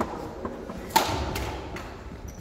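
Sharp impacts of a badminton rally: a smack at the start and a louder one about a second in, each trailing a short echo in a large sports hall.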